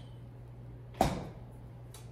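A refrigerator door shutting about a second in: one sharp thud with a short ring-out, over a low steady hum.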